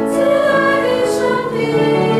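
A choir singing a hymn together in long, held notes.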